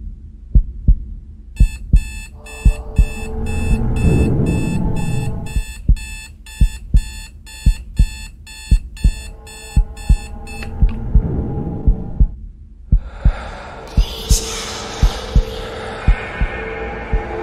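Trailer sound design: a low double thump like a heartbeat repeats steadily throughout. From about a second and a half in, a rapid high electronic beeping joins it, about three beeps a second, and stops near eleven seconds. A hissing swell rises near the end.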